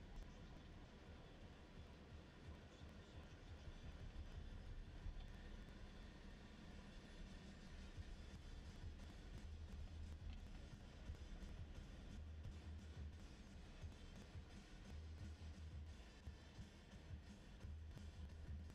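Faint, low in-cabin rumble of a nine-seater Fiat minibus driving slowly along a narrow road.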